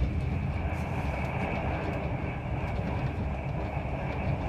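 Steady running rumble of a moving train, heard from inside the carriage.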